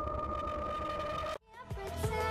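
A locomotive horn sounding one steady note over the low rumble of the approaching train, cut off suddenly about one and a half seconds in. A melodic electronic intro jingle follows.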